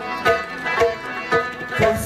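Afghan Pashto folk ensemble playing an instrumental passage: a rubab plucked in repeated notes over tabla drumming and sustained harmonium chords.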